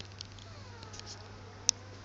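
Five-day-old puppies nursing: faint squeaky whimpers gliding up and down, with sharp clicking smacks from suckling, the loudest about one and a half seconds in, over a steady low hum.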